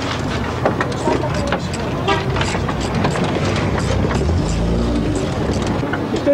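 Clinks and knocks of hand tools and metal parts as mechanics work in a car's engine bay, over background voices. About four and a half seconds in, a vehicle engine comes up briefly, rising in pitch.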